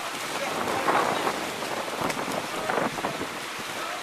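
Water splashing from several water polo players swimming hard across the pool, a steady noisy wash with small surges.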